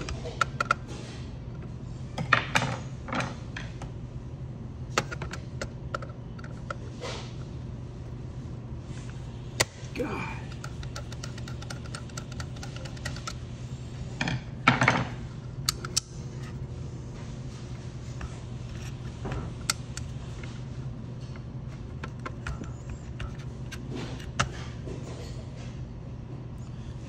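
Scattered light clicks and metallic clinks of small parts and tools being handled while rewiring a fryer's contactor box, over a steady low hum. The clinks bunch up about two seconds in and again about halfway through.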